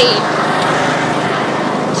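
Riding lawn mower's small engine running at a steady pace, a continuous low hum.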